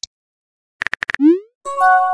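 Messaging-app sound effects: a quick run of about five sharp clicks like keyboard taps, a short rising pop, then a bright chime of several held tones as a new message bubble appears.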